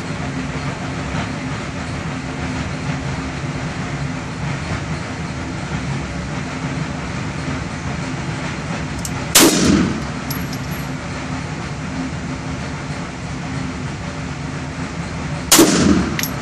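Two 9mm pistol shots from a Beretta 92 FS, about six seconds apart, each a sharp crack with a short reverberant tail off the indoor range walls. A steady hum runs underneath.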